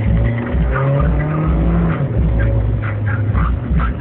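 Car engine heard from inside the cabin, its pitch rising and falling as the accelerator pedal is worked, over a heavy low rumble.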